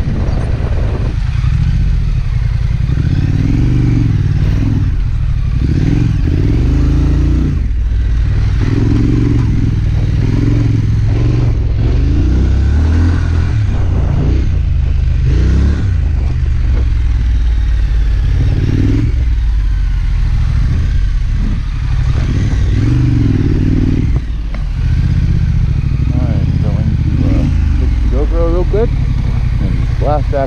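2019 Triumph Scrambler's parallel-twin engine running as the bike is ridden, under heavy low wind buffeting on the microphone.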